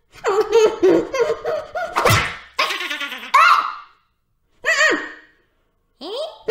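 The cartoon cat Talking Tom makes high-pitched wordless vocal sounds in three bursts. A short sharp noise comes about two seconds in.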